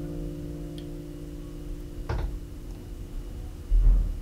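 Last acoustic guitar chord of the song ringing out and slowly fading, with a sharp click about two seconds in and a low thump near the end.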